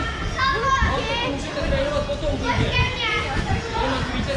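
Several children's voices calling and chattering over one another in a large hall.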